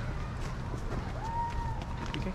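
Footsteps of several people walking up a paved path, over a steady low rumble, with a faint voice in the distance about halfway through.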